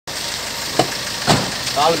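Steady hiss of roadside street noise, with two short knocks about a second in and a man's voice starting near the end.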